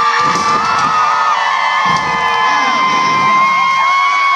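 Rock band's closing chord, with long sustained electric guitar notes ringing over a cheering, whooping crowd. Two heavy drum hits come about a second and a half apart.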